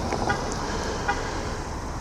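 A car driving past close by, its engine and tyres making a steady noise over the general sound of street traffic.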